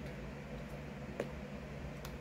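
Steady low room hum with a faint click just over a second in, from fingers digging a plastic scoop out of a tub of powdered protein.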